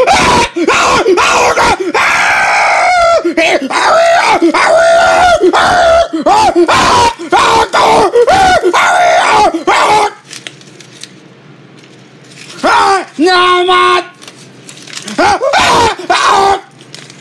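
A person's high-pitched voice yelling and shrieking without clear words, in rapid rising-and-falling cries for about ten seconds, then a short pause and two briefer outbursts near the end.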